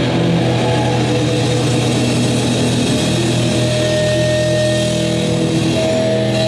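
Metal band playing live, led by a distorted electric guitar holding sustained, ringing notes. A higher held note comes in about halfway through.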